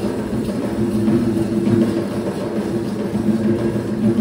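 Live Kandyan dance drumming: several barrel drums slung at the drummers' waists, played by hand in a fast, continuous rhythm under steady held tones.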